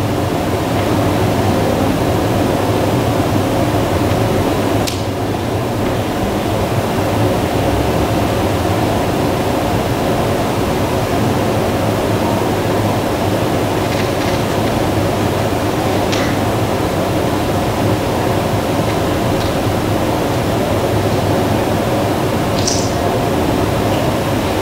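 Steady background hum and hiss of room noise, like a running ventilation fan, with a few faint clicks scattered through it.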